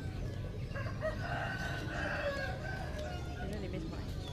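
A rooster crowing: one drawn-out call of about two seconds, starting about a second in, over a steady low background rumble.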